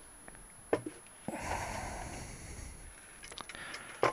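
A few light clicks and knocks of the motorcycle's aluminium cylinder head and camshafts being handled and lifted, with a soft breathy hiss lasting about a second and a half in the middle.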